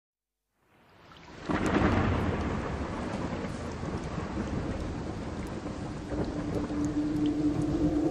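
Rain with a roll of thunder: after a second of silence it fades in, the thunder coming in suddenly about a second and a half in and rumbling on under steady rain. A low held musical tone enters near the end.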